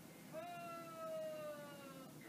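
A cat gives one long meow, a drawn-out note about one and a half seconds long whose pitch slides slowly down.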